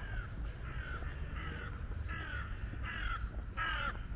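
A crow cawing repeatedly: about five calls, a little under a second apart.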